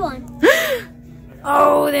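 A child's short, breathy gasp of surprise about half a second in, its pitch rising then falling, at spotting the symbol he was hunting for. He starts speaking near the end.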